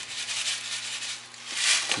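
Small broccoli seeds shaken from a packet, pattering onto the floor of a plastic sprouting tray: a soft, dry, grainy rattle that swells near the start and again near the end.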